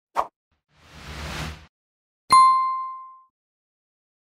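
Animated on-screen graphics sound effects: a short pop, a soft whoosh that swells and fades, then a bright bell-like ding, the loudest sound, that rings out for about a second.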